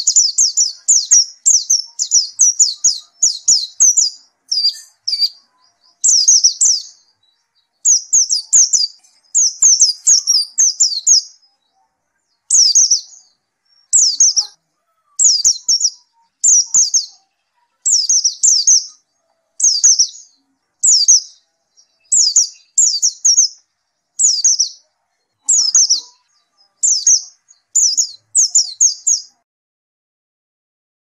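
Caged white-eye (pleci) singing continuously in a steady stream of song. It gives quick runs of high, thin chirps, each sliding downward, separated by pauses of about a second.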